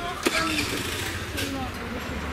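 Outdoor street ambience: scattered chatter and a laugh from people at café tables over a steady low traffic rumble, with one sharp clack about a quarter of a second in.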